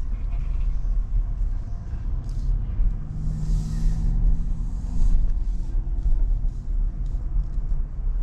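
Inside a moving car's cabin: steady low engine and road rumble as the car drives slowly. The engine note grows stronger in the middle, with a brief hiss about three seconds in.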